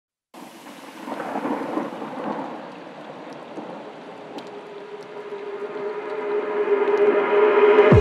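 Intro sound design: a thunderstorm-like rumble with rain hiss, then a single held synth tone that swells steadily louder toward the end, building into the music.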